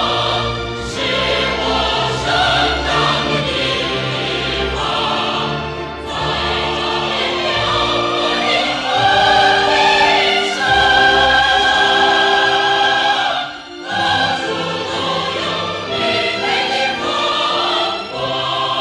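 A Chinese patriotic song sung in a trained, operatic style over orchestral accompaniment, with long held notes. A strong sustained note runs through the middle, followed by a brief break about fourteen seconds in.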